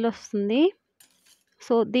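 Stainless steel ladle scraping and clinking against a steel bowl while scooping ground spice powder, with loud pitched squeaks in the first half second, then a few faint clicks.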